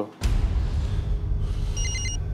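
Cell phone ringing with a rapid, trilling electronic ringtone, heard again near the end. Under it, a loud, low, steady drone cuts in abruptly just after the start.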